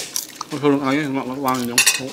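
A metal spoon clinking against a ceramic plate, once at the start and again with a short ring near the end. A person's voice comes in between the two clinks.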